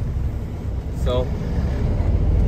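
Semi truck's diesel engine running at low speed, a steady low hum heard from inside the cab.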